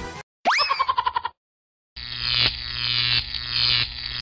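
Background music cuts off and a cartoon 'boing' sound effect follows: a quick upward glide, then a wobbling, pulsing tone lasting under a second. After a short silence, a busier stretch of music or transition effect begins about two seconds in.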